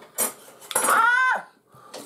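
Metal knife and fork clinking and scraping on a plate while food is cut, with a sharp clink about a quarter second in and another near the end. In the middle comes a short, high exclamation, "ah!", which is the loudest sound.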